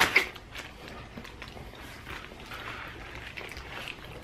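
Close-up chewing of burrito mouthfuls, with soft wet mouth sounds and scattered faint clicks. A short, sharp crackle sounds right at the start and is the loudest thing.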